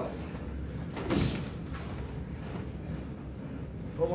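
A single thud about a second in, over a steady low background of room noise.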